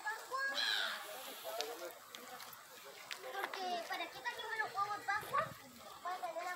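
Faint chatter of people's voices, children's among them, with no clear words.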